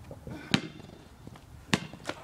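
A basketball bouncing on a concrete driveway: two sharp bounces a little over a second apart.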